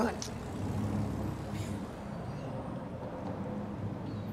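A low, steady rumble of outdoor street background, like distant traffic, runs under a pause in the dialogue.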